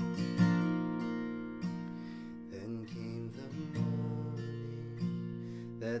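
Acoustic guitar strummed slowly, a new chord stroke about once a second, each left to ring. A man's singing voice comes in right at the end.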